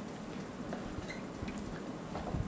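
Quiet room tone with a few faint, soft clicks.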